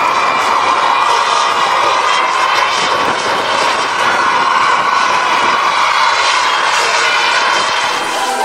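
Stage pyrotechnic spark fountains spraying with a steady, loud, rushing hiss.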